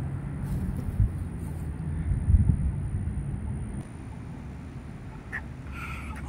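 Steady low outdoor rumble with a low hum, and a few soft thumps in the first half.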